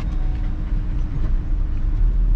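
Vehicle driving slowly, heard from inside the cabin: a steady low rumble of engine and road noise with a faint steady hum.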